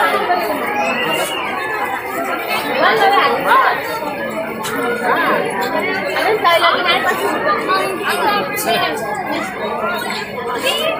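A crowd chattering: many voices talking at once and overlapping, with no single voice standing out.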